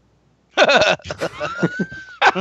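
After a brief hush, men burst out laughing, with a thin high tone rising and then holding through the laughter near the end.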